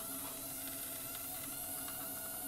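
Home-built high-voltage coil rig running: a steady faint buzz and hiss with a few faint ticks, the spark gap described as ripping and chattering.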